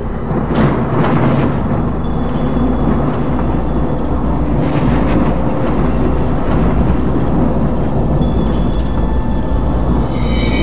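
Dark trailer sound design: a loud, steady low rumbling drone under a faint high tick repeating a little under twice a second, with one sharp hit about half a second in.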